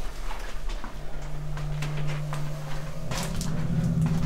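Footsteps crunching and scuffing over debris on a littered floor, in an irregular series of short clicks, with a steady low hum that comes in about a second in and grows louder near the end.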